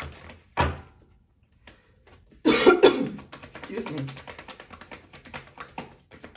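A deck of tarot cards being shuffled by hand, the cards flicking in a rapid patter of small clicks through the second half. A loud cough comes about two and a half seconds in, with a shorter sharp noise just before one second.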